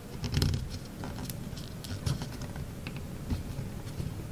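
Origami paper rustling and crinkling in irregular small crackles as fingers fold and press the creases of a two-colour paper ninja star, with a few soft thumps of hands on the table, the loudest about half a second in.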